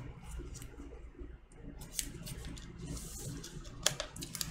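Plastic shrink wrap on a vinyl record sleeve being picked at and torn open by hand: faint crinkling with a few sharp clicks, the sharpest just before the end.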